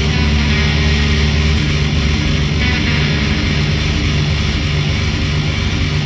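Black metal-punk band playing an instrumental passage with a dense wall of distorted electric guitar and a basement demo sound.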